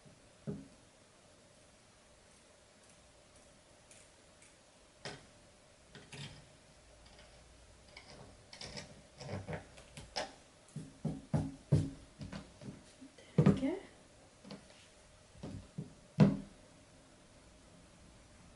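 Scissors snipping through thick leggings fabric: short, irregular snips and clicks, a few at first, then a quick run of them in the middle, with a couple of louder ones near the end.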